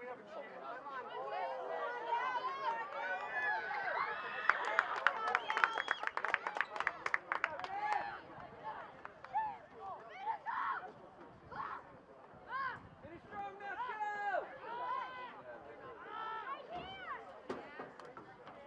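Scattered shouts and calls from players and spectators at an outdoor soccer game, several voices overlapping without clear words. A quick run of sharp clicks sounds from about four to eight seconds in.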